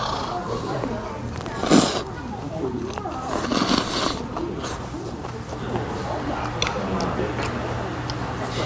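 Jjamppong noodles slurped from the bowl: a short slurp about two seconds in, then a longer, louder one around three and a half to four seconds in, over faint background voices and a low steady hum.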